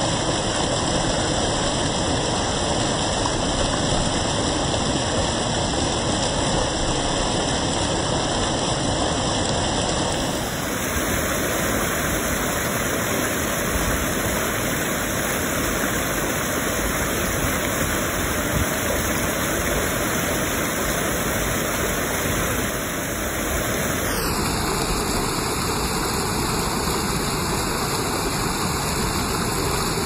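River water pouring over a weir into churning white water, a steady rush. Its tone shifts abruptly about ten seconds in and again about twenty-four seconds in.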